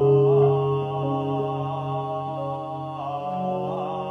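Buddhist sutra chanted by a male voice in long, held notes over a backing music track, the chant moving to a new pitch right at the start and again about three seconds in.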